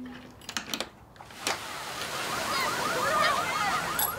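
Car alarm whooping faintly and muffled in the background, with a few sharp clicks in the first second and a half.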